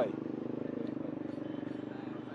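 A motor vehicle engine idling steadily, with an even rapid pulse.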